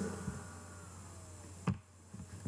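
Quiet pause with faint steady electrical hum and room tone, broken by one short click near the end.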